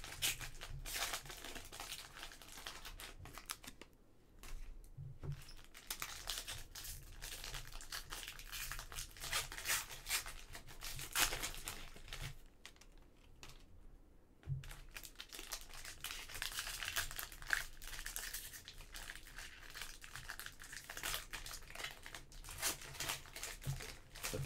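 Foil wrapper of a 2020-21 Panini Mosaic soccer trading-card pack crinkling and tearing as it is opened by hand, with the cards inside handled. Irregular rustles, broken by two short lulls.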